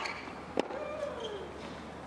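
Tennis rally: a racket strikes the ball about half a second in, and the player lets out a drawn-out grunt on the stroke that falls in pitch. The tail of the opponent's grunt from the previous shot fades out at the start.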